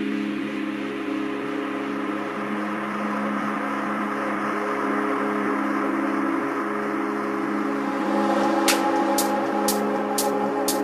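Ambient electronic music: a sustained low chord held throughout. Near the end a sharp percussion beat comes in at about two hits a second.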